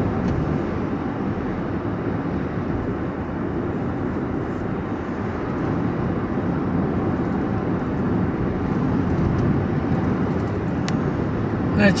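Steady road and engine rumble inside a moving vehicle's cabin while driving, with a single faint click near the end.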